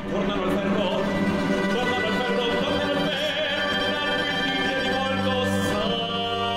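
Early-music string ensemble with violas da gamba playing a loud, sustained passage of held chords that comes in suddenly at the start.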